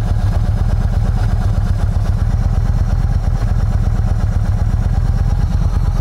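Yamaha V-Star 1300's V-twin engine idling steadily, an even low pulse.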